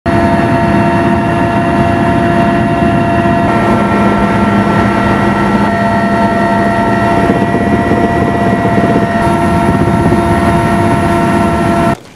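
Cabin noise inside a flying Mi-8-type transport helicopter: a steady, loud roar of engines and rotor, with several constant whining tones from the turbines and gearbox. It cuts off suddenly near the end.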